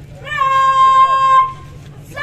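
A young woman's high voice calls out one long, drawn-out syllable of a chanted slogan, rising and then held steady for about a second before it stops.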